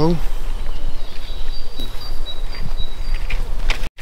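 Outdoor ambience by the water: wind rumbling on the microphone, with a row of faint, high-pitched chirps repeated through the middle.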